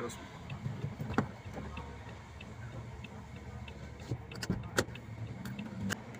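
Inside a car idling at a stop: a steady low engine and road rumble with a light regular tick about twice a second, and a few sharp clicks about a second in and again around four and a half seconds.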